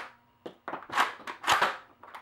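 Nerf Rough Cut 2x4 spring-plunger blaster being pumped and slam-fired: a quick run of plastic clacks and pops, the two loudest about a second and a second and a half in.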